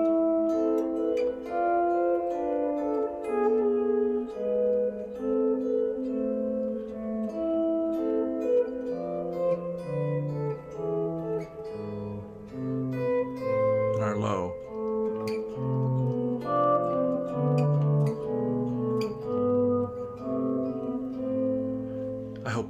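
Electric guitar played as a slow two-voice line of single plucked notes, an upper and a lower voice, outlining A minor, D minor and E7 chords. About halfway through, the lower voice drops into the bass register.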